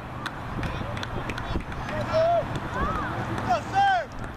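Several short, high-pitched shouted calls from girls or women on a soccer field, coming in the second half, the last the loudest, over low wind rumble on the microphone.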